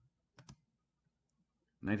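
Two quick computer clicks in near silence, the sound of the presentation being advanced to the next slide. A man starts speaking near the end.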